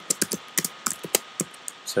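Typing on a computer keyboard: quick, irregular key clicks, about half a dozen a second.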